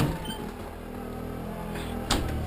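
Four-wheeler (ATV) engine running steadily, a level engine hum with no change in pitch.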